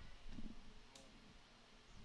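Near silence: faint open-air ambience of the ballfield, with a soft low sound about half a second in and a single small click about a second in.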